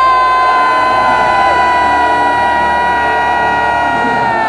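A male metal singer holding one long, high sung note, steady in pitch and sagging slightly near the end, over cheering from the crowd.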